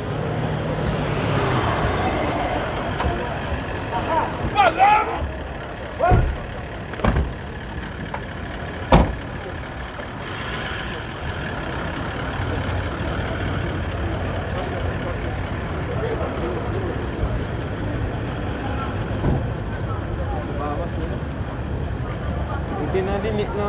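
SUV engines running close by, a steady low rumble under scattered voices, with three sharp knocks between about six and nine seconds in.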